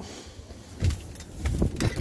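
Clothing rustle and handling noise on a phone microphone pressed against a jacket. From about a second in, low, uneven wind buffeting on the microphone, broken by a few clicks and knocks.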